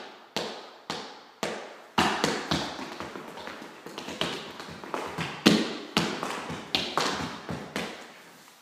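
Tap-dance steps: a string of sharp taps on a hard floor, spaced about half a second apart at first, then quicker and uneven, with the loudest strike about five and a half seconds in.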